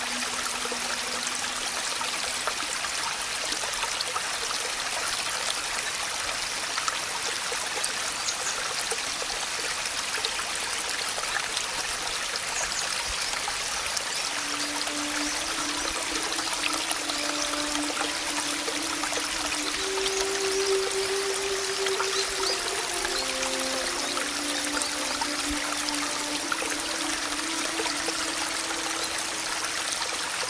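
Steady hiss of rain, with a few soft, long-held low music notes: one fades out early, then more come in from about halfway through, stepping slowly between pitches.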